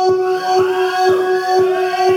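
Live electronic-sounding music: a held drone note under a steady beat of about three pulses a second, with sliding, wavering pitches coming in about half a second in.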